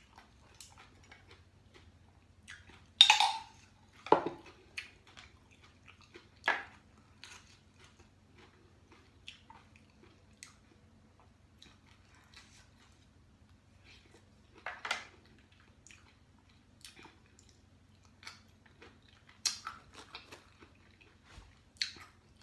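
A person chewing seafood and eating with chopsticks: soft chewing and smacking with scattered short clicks, the loudest about three and four seconds in.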